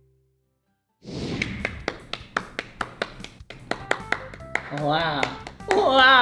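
Silence for about a second, then a run of sharp taps and thunks, roughly three a second, with music. A voice makes wavering, drawn-out exclamations near the end.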